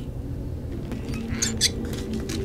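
Quiet war-film soundtrack: a steady low drone with a couple of short high rustles a little past halfway.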